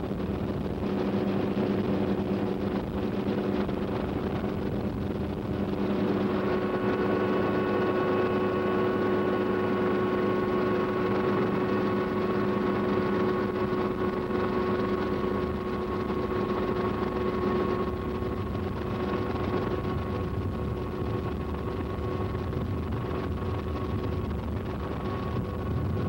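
Steady drone of a helicopter's engine and rotor heard from inside the aircraft, with a steady higher whine joining about six seconds in.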